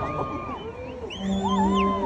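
Fireworks-show soundtrack: warbling tones that glide up and down in pitch, several at once, with a low steady note coming in about halfway through. No fireworks bursts are heard in this stretch.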